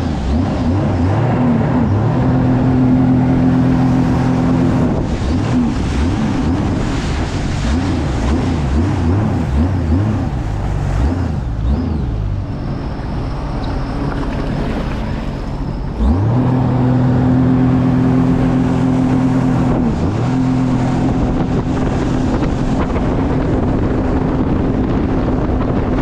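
Sea-Doo personal watercraft engine running under way, with wind and water spray rushing past. The throttle eases off for a few seconds past the middle, then opens again at about 16 s with a sharp rise in engine pitch, and rises once more a few seconds later.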